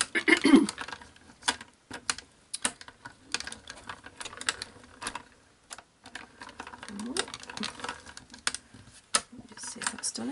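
Manual crank-handle die-cutting machine being turned by hand, the clear cutting plates with a border die and felt rolling through the rollers with an irregular run of sharp clicks.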